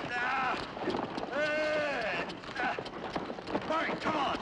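Wordless straining shouts of 'ah!' from the men handling the work, over the clopping and stamping of a draft-horse team's hooves on dirt as the pair strains in harness to pull a tree stump. Two long shouts stand out, one at the start and one about a second and a half in.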